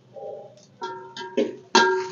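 A metal spoon clinking against a steel cooking pot three times while stirring, each strike ringing with the same metallic tone, the last the loudest.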